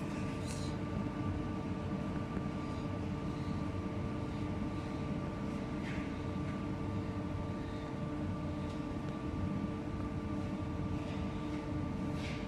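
Steady mechanical hum of a machine running in the background, holding several constant tones over a low rumble.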